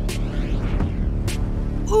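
Low, throbbing suspense music drone, with two short sharp ticks, one just after the start and one about a second later.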